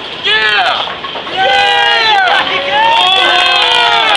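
People yelling and cheering after a bowling strike: a short cry just after the start, then long drawn-out overlapping yells from about a second and a half in.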